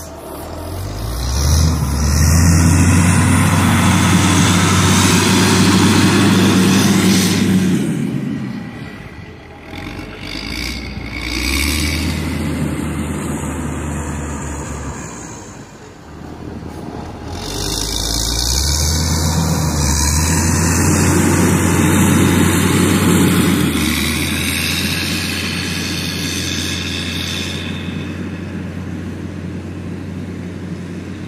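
Diesel engine of a Caterpillar 120K motor grader running under load as the machine works close by. It grows loud twice, about two seconds in and again near the middle, with dips in between. It eases off near the end as the grader moves away.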